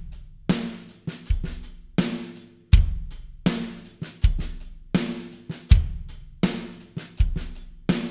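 A drum kit playing a simple steady beat at about 80 beats a minute: eighth notes on the hi-hat, kick drum on beats one and three, and the snare on two, the 'a' of two, the 'e' of three and four.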